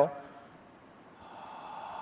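A man's long, audible breath, a soft hiss that grows louder through the second half, taken during a guided breathing exercise.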